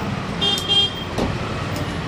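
Steady street traffic rumble, with a short high-pitched horn toot about half a second in.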